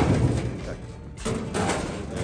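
Men talking over background music, with a sharp knock right at the start.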